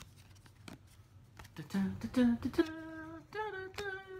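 A man humming a short tune of held notes, starting about a second and a half in and stepping up in pitch, over soft clicks of trading cards being flicked through his fingers.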